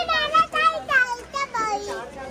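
A young child's high-pitched voice talking.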